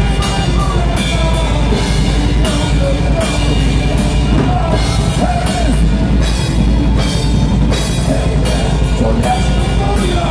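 Heavy metal band playing live and loud: distorted electric guitars over a drum kit with a steady bass drum.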